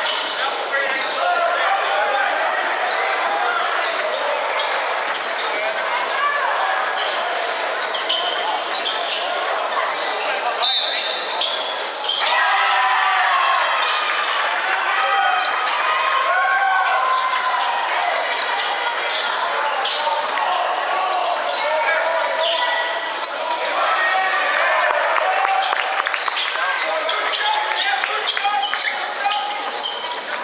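Basketball being bounced on a hardwood court during play, with scattered knocks of the ball, under the voices of players and spectators, all echoing in a large sports hall.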